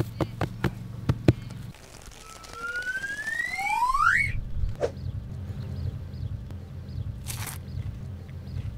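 A few plucked notes, then a rising two-tone whistling sweep, a cartoon-style sound effect, that cuts off about four seconds in. After it a steady low rumble, like wind on the microphone, with a short burst of hiss near the end.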